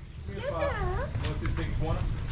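Caged common hill myna calling: a wavering, voice-like call about half a second in, then a shorter second call.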